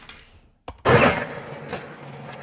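Audio of an outdoor phone video starting to play: a click, then about a second in a sudden loud noisy burst that fades within half a second into a steady noisy background.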